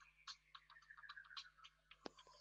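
Near silence, with faint irregular clicks.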